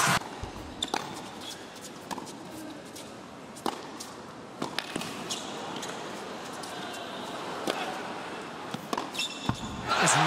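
Tennis rally on an indoor hard court: a series of sharp racket strikes and ball bounces, a second or a few seconds apart, over a low hall hush.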